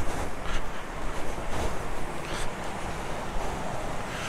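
Steady rushing of water spilling over a mill dam, mixed with wind on the microphone, with a few faint footsteps on steel grated stairs.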